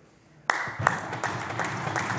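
Applause from a group of legislators, breaking out suddenly about half a second in after a brief hush, with single sharp claps standing out from the dense clapping.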